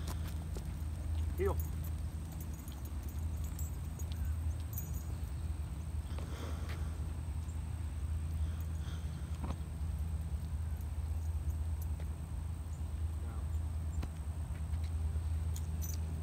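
A man gives one short spoken command, 'Heel', early on. After it there is only a steady low rumble of outdoor background noise with a few faint ticks.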